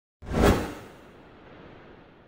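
A single whoosh sound effect for an animated logo intro. It swells up suddenly, peaks about half a second in, and fades quickly into a faint tail of hiss.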